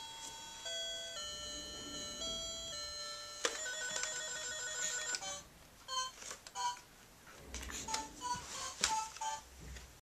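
Baby's electronic activity cube toy playing a simple beeping melody. About three and a half seconds in, a click starts a quicker trilling tune, followed by short separate beeps mixed with knocks and taps on the plastic.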